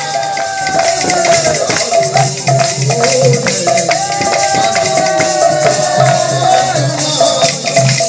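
Odia kirtan music: two barrel-shaped mridang (khol) drums played in a steady rhythm, with jingling metal percussion and long held melody notes that slowly glide over them.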